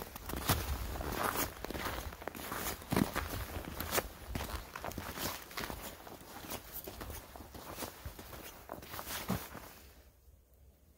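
Footsteps of a person walking over snow, sand and gravel, a step roughly every second, each a short crunch.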